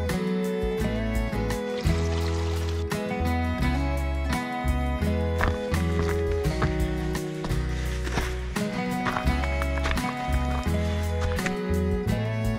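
Background music: acoustic guitar over a bass line, with a steady beat.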